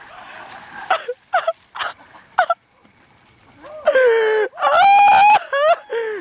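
Thin ice breaking up and water splashing as a person crashes through, followed from about four seconds in by long, loud yelled cries, the first falling in pitch and the second held.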